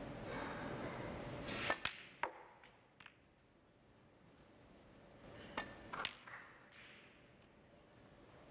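Snooker balls clicking as a shot is played: a cluster of sharp clicks about two seconds in and another group around five and a half to six seconds, with a faint steady hum beneath.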